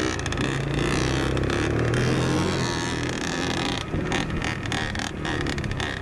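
Dirt bike engines running at low, steady revs while putting along a trail, heard from a bike-mounted camera with wind noise on the microphone. A few knocks and rattles come about four to five seconds in.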